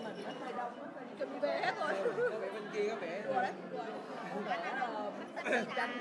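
Several people talking over one another: chatter.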